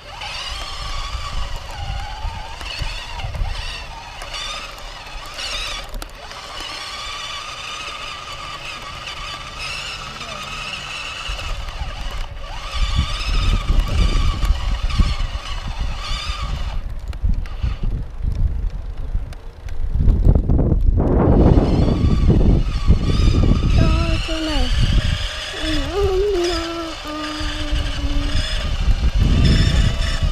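Ride on a Stacyc electric balance bike: a thin, wavering electric-motor whine over heavy wind buffeting and tyre rumble on the dirt, growing rougher about twelve seconds in and again about two-thirds of the way through.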